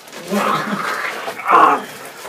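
A group of young people laughing, with a louder burst of laughter about one and a half seconds in.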